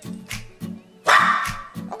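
A small papillon dog barks once, a short bark about a second in, over background music with a steady beat.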